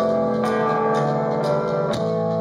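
Live indie rock band playing through an outdoor PA: guitars and keyboard hold sustained, ringing chords over light drum hits. The chord changes about half a second in and again near the end.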